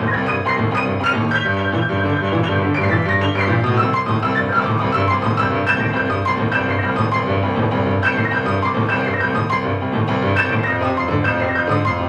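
Solo boogie-woogie piano played without pause: a continuous rolling left-hand bass line under rhythmic right-hand chords and riffs.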